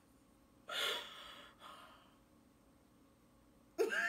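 A person's short breathy gasp about a second in, trailing off over the next second, with faint room tone before and after.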